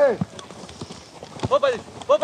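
Men shouting in short bursts, one ending just after the start and another about one and a half seconds in. Between them come soft thuds of running feet and a football being kicked on grass.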